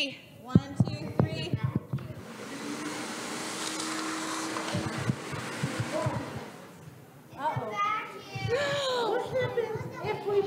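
A vacuum motor inside a coin-collecting prop switches on about two seconds in and runs steadily for about four seconds, a whooshing rush of air with a low steady hum, as it sucks coins from a hand, then winds down. Children's voices come before and after it.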